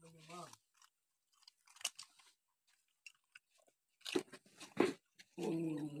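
Dogs crunching and chewing pieces of cake, with a few sharp, loud crunches about four seconds in.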